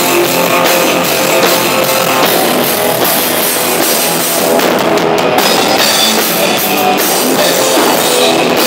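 Loud live rock music: a band with drum kit and guitar playing on without a break.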